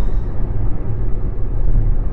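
Steady low rumble of road and engine noise inside a car's cabin as it drives.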